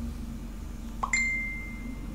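A single light ding about a second in: a click followed by one clear, high ring that holds for about a second.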